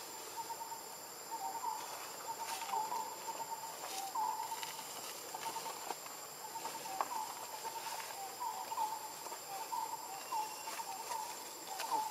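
Forest ambience: a continuous run of short, repeated chirps at one pitch, some with a rising hook, with a few sharp clicks and a thin, high, steady tone behind.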